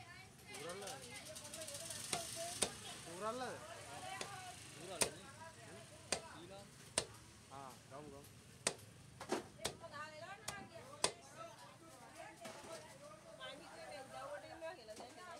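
A heavy fish knife chopping through raw tuna into a thick wooden chopping block: about a dozen sharp knocks at uneven intervals, most of them about a second apart.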